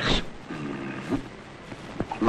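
A man's voice in dialogue: a short sharp sound at the start, then a low, held, even-pitched vowel or hum lasting about half a second.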